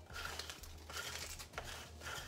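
Sticky lint roller rolled across a cotton hoodie in several short strokes, faint.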